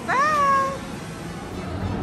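A single high-pitched, voice-like call. It swoops up and is then held for most of a second before fading, over faint background music.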